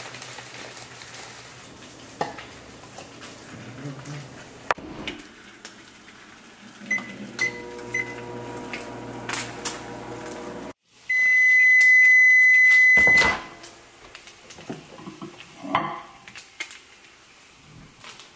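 Light rustling as an instant oatmeal packet is emptied into a bowl. Then three quick microwave keypad beeps and a microwave oven running with a steady hum. Then one long, loud beep of about two seconds, the microwave's end-of-cycle signal, followed by light handling clatter.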